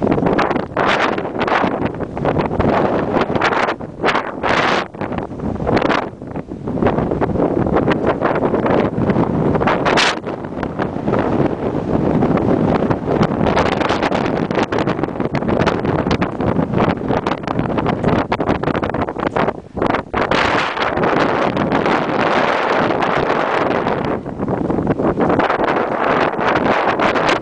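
Strong wind buffeting the camera microphone in loud, uneven gusts, with brief lulls about six seconds in and again near twenty seconds.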